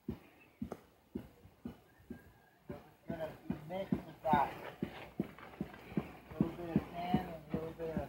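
Footsteps on dirt, about two a second, of someone walking with the camera. Faint voices talk from about three seconds in.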